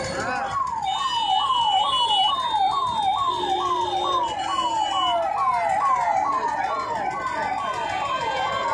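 Electronic siren sounding a fast repeating wail, each cycle rising sharply and falling again, a little over twice a second, over crowd noise.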